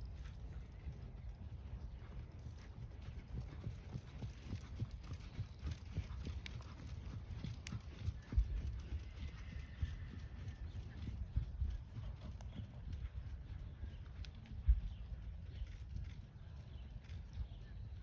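Hoofbeats of a ridden horse moving over a sand arena: a steady run of soft strikes over a low rumble. Two louder thumps stand out, about eight and fifteen seconds in.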